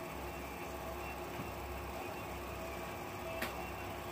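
Quiet room tone with a steady low hum, and one faint click about three and a half seconds in.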